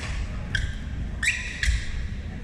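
Sports shoes squeaking on a hardwood gym floor: four short high squeaks in quick succession, over a steady low rumble of a large hall.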